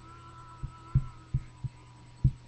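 Steady low hum with about four dull low thumps at uneven spacing, most of them in the second half: the sound of handling or movement close to a webcam microphone.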